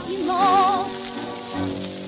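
Dance orchestra playing an instrumental passage of a 1930s song-waltz, heard from a shellac 78 rpm record with its surface crackle underneath. A held note with a wide vibrato sounds about half a second in.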